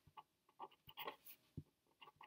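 Felt-tip marker writing on paper: a quick series of short, faint scratchy strokes.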